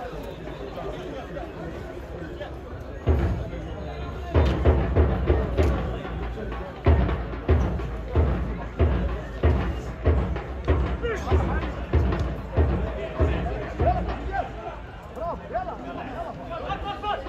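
A deep drum beaten in a steady rhythm, about three beats every two seconds, starting about three seconds in, over people's voices.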